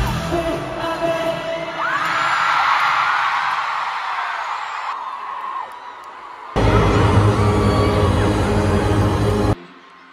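Live K-pop concert sound through an arena PA, with fans screaming over the music. About six and a half seconds in it cuts abruptly to a louder, bass-heavy stretch of music, which cuts off suddenly near the end.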